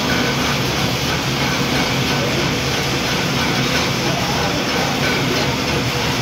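Belt-driven pulverizer flour mill (atta chakki) running at a steady speed, together with its line-shaft pulleys and drive belt: a loud, even mechanical rumble and hiss.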